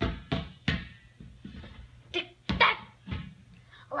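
Hand slaps and punches on an inflated rubber hopper ball: a quick, uneven series of about eight sharp hits, each dying away fast.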